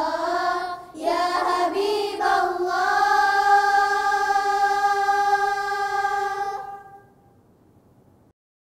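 Choir of girls singing a nasheed together, with a brief break about a second in and then one long held note that fades out about seven seconds in.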